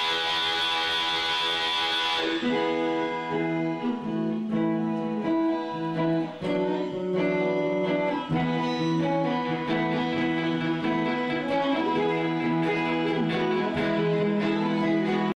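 Electric guitar played live through an amplifier: sustained notes and chords that change every second or so. A bright hiss over the guitar cuts off about two seconds in.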